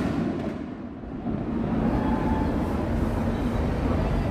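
A steady low rumbling noise with no distinct bangs, in a lull between firework bursts. It dips briefly about a second in.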